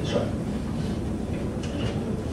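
Steady low rumble of room background noise picked up by a headset microphone, with faint brief rustles just after the start and near the end.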